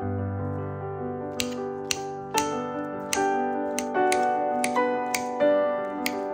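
Gentle piano background music, joined from about a second and a half in by about ten sharp, irregular taps of a knife blade cutting through a banana onto a marble board.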